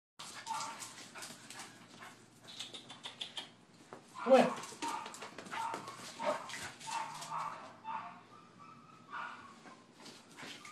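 A pit bull–dachshund mix dog making short whines and the odd bark over a run of light clicks and rustles. A person calls "come" about four seconds in.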